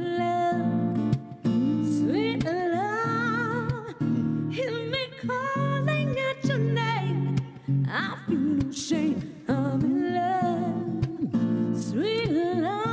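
A woman singing a slow soul ballad with vibrato-rich, held notes over guitar accompaniment, in phrases separated by short breaths.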